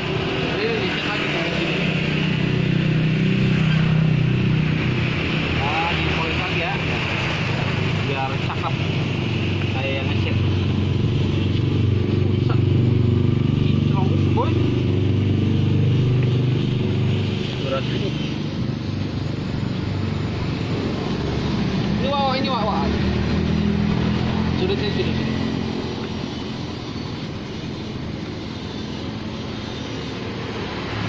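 Steady street traffic with motorcycle and car engines running by, a continuous low rumble that swells and fades, with voices in the background.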